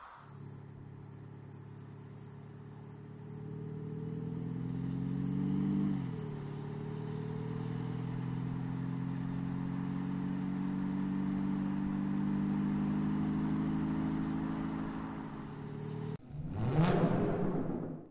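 Audi SQ5's 3.0-litre V6 engine accelerating: its pitch rises for a few seconds, drops sharply at an upshift about six seconds in, then climbs slowly again and fades out. Near the end a brief, loud sound effect cuts in.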